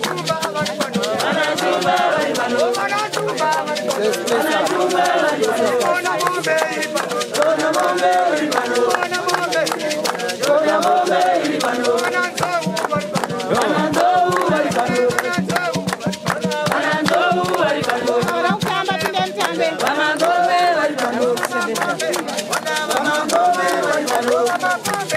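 A crowd singing together to steady rhythmic hand clapping, with a shaker rattling along.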